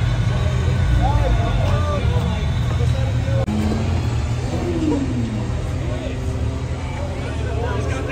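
A car engine idling with a low rumble under crowd chatter. The sound cuts abruptly about three and a half seconds in, and the engine noise is quieter after the cut while the talking goes on.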